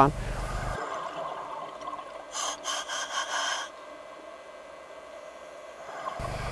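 Scuba diver breathing through a regulator underwater: a rush of exhaled bubbles about two seconds in that lasts about a second and a half, then a faint hiss.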